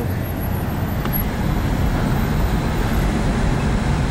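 Steady low rumble of a car's engine and tyres, heard from inside the cabin while driving in slow freeway traffic.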